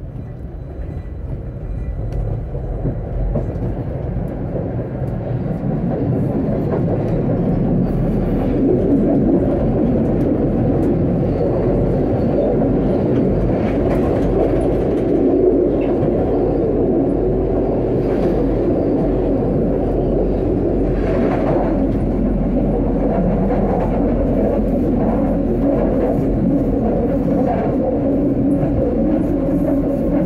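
A tram pulling away from a stop and running along its track. The low running noise of the motors and wheels on the rails builds over the first several seconds as it gathers speed, then holds steady.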